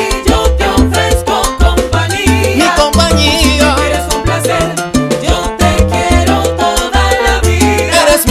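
Instrumental passage of salsa music without singing: a steady beat of percussion strokes over a low bass line.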